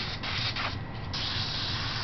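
Airbrush spraying paint: a few short strokes of hiss, then a steady hiss of air and paint starting about a second in.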